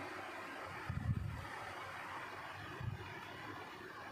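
Soft handling noise as knitted wool coats are shifted and spread out, over a steady faint hiss, with two dull low thuds, one about a second in and a smaller one near three seconds.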